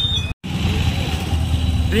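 Steady low rumble of motor-vehicle engines and street traffic, broken by a brief total dropout about a third of a second in.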